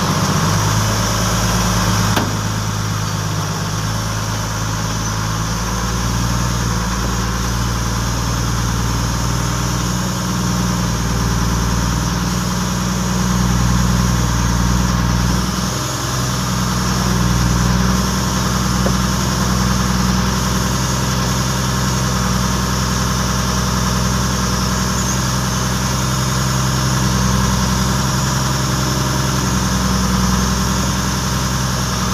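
A vehicle's engine runs steadily as it drives slowly over rough ground, heard from inside the cab. There is a brief click about two seconds in, and small changes in engine speed partway through.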